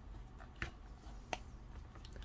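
Faint handling sounds of a phone being pried out of a flexible TPU phone shell, with two soft clicks less than a second apart.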